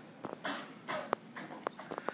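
Faint, irregular clicks and taps with soft breathy, rustling noise in between, in a quiet room.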